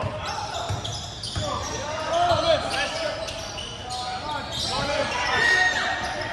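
Live basketball play on a hardwood gym floor: the ball bouncing, sneakers squeaking, and players' voices, all echoing in the large hall.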